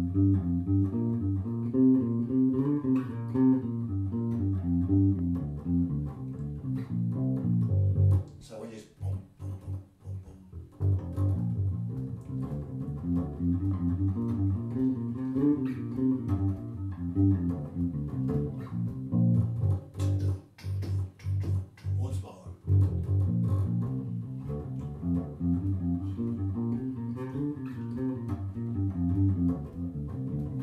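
Unaccompanied electric bass guitar playing the blues scale in G, a run of single notes stepping up and down. The notes thin out to a brief pause about eight seconds in.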